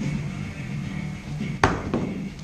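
An empty cardboard box dropped onto a concrete floor, landing with one sharp smack and a short scuff about one and a half seconds in, over music playing in the background.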